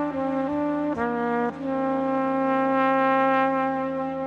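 Solo trumpet playing a slow melody: three short notes, the last one higher, then one long held note from about a second and a half in.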